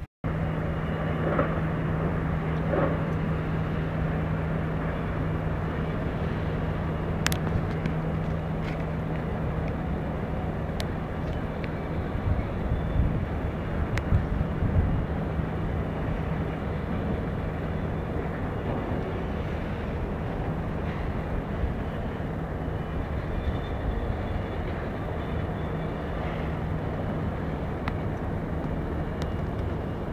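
Outdoor city and harbour ambience heard from high above: a steady low hum of distant traffic and machinery over a broad noise wash, with a few louder low rumbles about halfway through.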